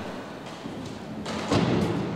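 A single dull thump about one and a half seconds in, following faint, steady background noise.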